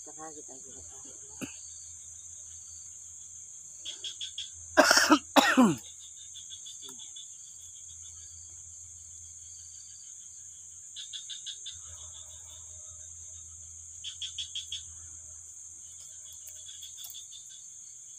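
Night insects keep up a steady high-pitched drone, with short bursts of rapid cricket chirping every few seconds. About five seconds in, a person coughs twice, loudly.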